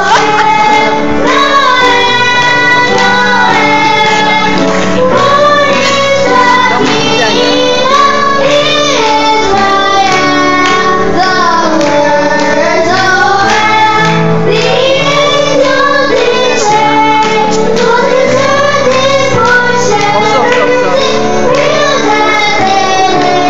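A small group of children singing a Christmas carol together into handheld microphones, one continuous sung melody.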